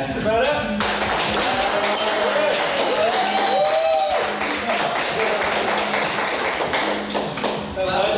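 Metal fork tapping and scraping on an empty plastic tray in quick, dense clicks as the last crumbs are cleared, followed by hands brushing together. A short voice-like glide comes and goes a few seconds in.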